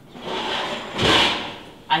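A kitchen drawer sliding with bakeware shifting inside it, swelling to its loudest about a second in and then dying away.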